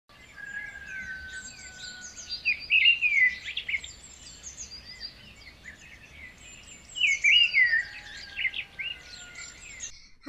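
Birdsong: several birds chirping and whistling, with two louder bursts of quick swooping calls, about two and a half seconds in and again about seven seconds in.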